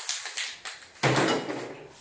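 Aerosol spray-paint can hissing as black paint is sprayed on, followed about a second in by a louder burst of broad noise.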